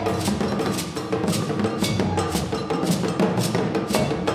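Live band playing an instrumental passage of a West African brass-band song, carried by sharp percussion strikes about twice a second over a steady low bass and band part.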